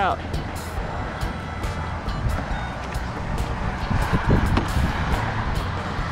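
Strong wind buffeting the microphone: a steady low rumble with an even hiss over it.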